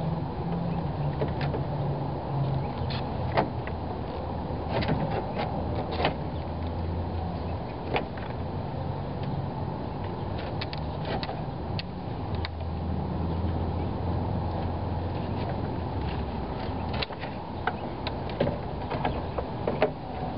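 Scattered clicks and light knocks of a car radiator and its hoses being handled and wiggled down into its rubber mounts, over a steady low hum.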